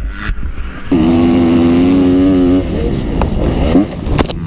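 Dirt bike engine heard from the rider's on-board camera: about a second in it opens up to a loud, steady high rev, then a little past halfway the revs drop and rise and fall unevenly.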